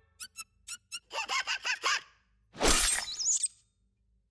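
Cartoon slapstick sound effects: four quick ticks, then a rapid run of short squeaks, then a loud hit about two and a half seconds in, followed by a warbling high whistle.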